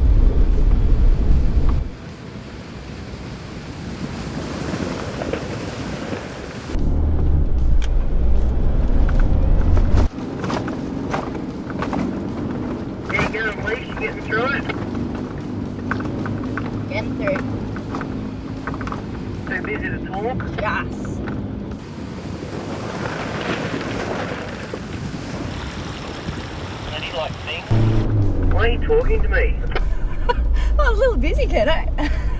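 Isuzu D-Max ute towing a caravan through a river crossing: engine running with water splashing and rushing, cut between outside and in-cabin sound, with background music.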